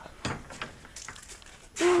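Quiet, with a few faint short knocks in the first second, then a man's brief 'oh' right at the end.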